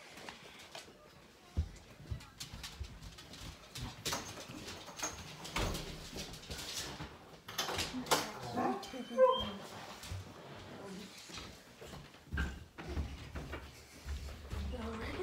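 A dog making short, wavering high vocal sounds about two-thirds of the way in, among rustling and scattered knocks from handling.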